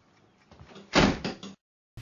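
A single heavy thump about a second in, with a short ring-out, after which the sound cuts off to dead silence.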